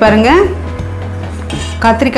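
A steel ladle clinking against a metal pot as it stirs a boiling curry, over background music with a steady bass line; a voice trails off about half a second in.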